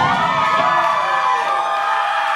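Club audience cheering and whooping at the end of a live rock song, while the band's last chord rings on and dies away.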